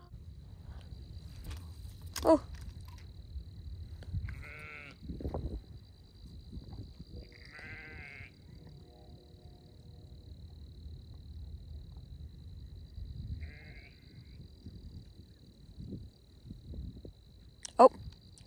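Farm livestock bleating: three wavering calls spaced several seconds apart, over a low wind rumble.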